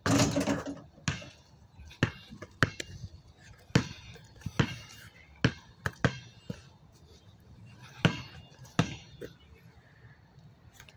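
A basketball hits the rim and backboard of a portable hoop with a rattle lasting about a second. It then bounces on asphalt in about ten separate thumps at uneven spacing.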